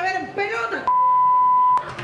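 Voices, then a steady electronic beep of a single pitch lasting about a second, the loudest sound here, which cuts off abruptly before the voices return.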